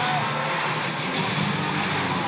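Music playing through a ballpark's sound system over steady crowd noise from a full stadium.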